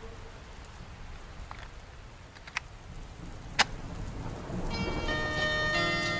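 Background hiss between lofi tracks, with a few sharp clicks, the loudest about three and a half seconds in. Near the end, the next track's intro comes in with chiming, bell-like keyboard notes.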